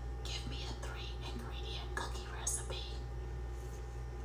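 A woman whispering a voice command to an Alexa smart display, over a steady low hum.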